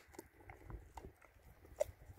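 A New Zealand Huntaway puppy licking sardines out of a hand-held plastic tub: faint, irregular wet licks and small clicks, with one sharper click near the end.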